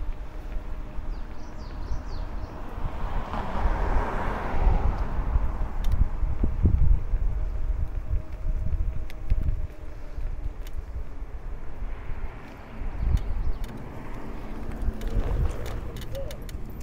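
Wind buffeting the camera microphone: a low rumble that swells and dips, with a faint steady hum underneath.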